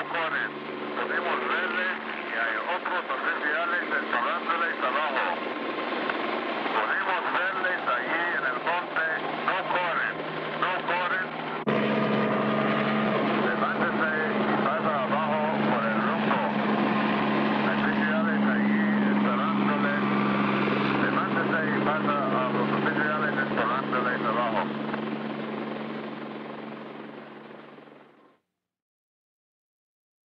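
Helicopter running steadily, with many voices shouting and calling over it. About twelve seconds in it cuts to a louder helicopter drone, and near the end it fades out.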